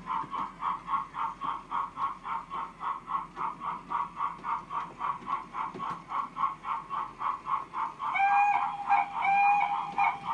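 Model railway sound system playing a level-crossing warning tone that pulses steadily about three times a second. Near the end, a sound-fitted model steam locomotive gives two short whistle blasts as the train reaches the crossing.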